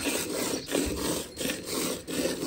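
Milk squirting by hand from a cow's teats into a part-filled steel pail, each squeeze sending a hissing spurt into the froth. The spurts come in a steady rhythm as the two hands alternate.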